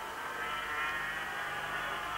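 Two-stroke 500cc Grand Prix racing motorcycles running at speed, a steady high buzz of engine notes over the old broadcast sound.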